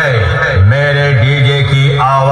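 Loud electronic DJ remix played through a large DJ speaker stack during a speaker check: a held, chant-like drone over a deep, steady bass note, which settles in after a falling sweep about half a second in.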